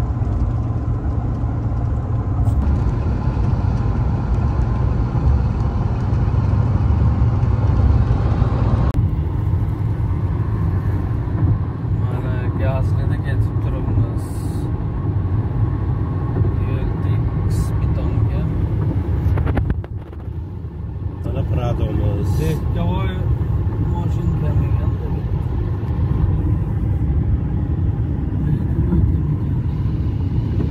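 Steady low road rumble of a car driving at highway speed, heard from inside the cabin: tyre and engine noise. The sound changes abruptly about nine seconds in and again about twenty seconds in.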